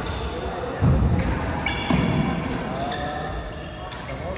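Badminton play in a large echoing sports hall: sharp racket strikes on shuttlecocks, sneakers squeaking on the court floor, and two heavy thuds of footfalls about one and two seconds in, over the murmur of players' voices.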